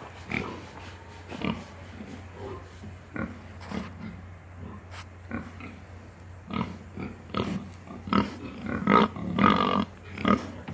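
Young pigs grunting in short separate grunts, which come faster and louder in the last few seconds.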